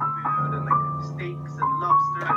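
Digital piano played four hands: a melody of held high notes, a new note every half second or so, over a sustained low bass note.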